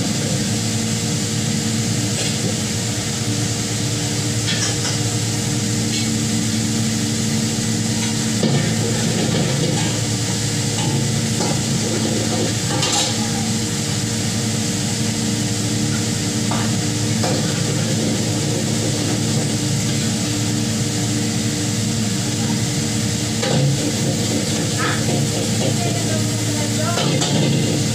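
Food frying in a large wok of hot oil, a steady sizzle, with a utensil stirring it and knocking against the pan now and then. A steady low hum runs underneath.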